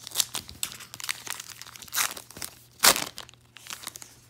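Wrapper of a trading-card pack being torn open and crinkled by hand: a string of short crackles, with the loudest tears about two seconds in and just before three seconds.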